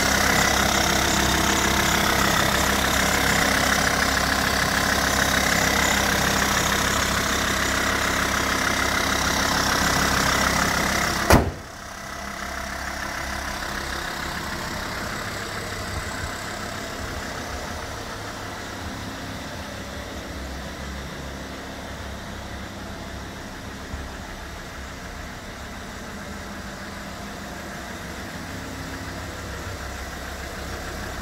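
SsangYong Rexton II's turbodiesel engine idling steadily with the bonnet open. About eleven seconds in, the bonnet is slammed shut with a single loud bang, and the idle carries on, quieter and muffled.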